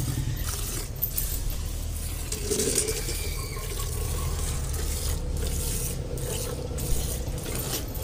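Buffalo being milked by hand: rhythmic squirts of milk hitting a steel bucket, about two a second. A steady low rumble runs underneath.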